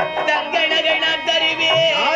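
Live accompaniment music for Tamil street theatre: one sustained, gently wavering melodic line over a few drum strokes.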